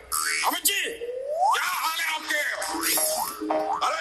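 Comic boing-like pitch slides rising and falling in quick arcs, with one long upward glide about a second in, over music.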